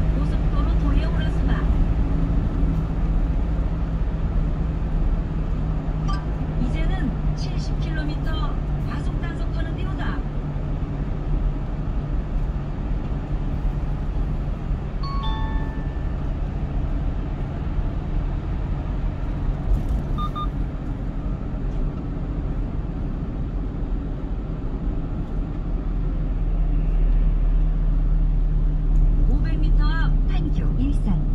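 Steady low engine and tyre drone heard inside a moving car's cabin at expressway speed. A short electronic chime sounds about halfway through and a brief beep a few seconds later.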